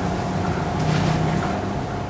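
Steady low hum and hiss of room background noise, with a faint thin tone running through it.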